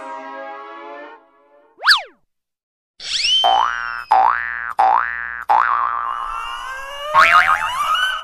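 Cartoon comedy sound effects edited over the scene: a held tone fading away, a quick up-and-down whistle swoop, then a run of springy rising boings, about one every two-thirds of a second, ending in a long rising slide.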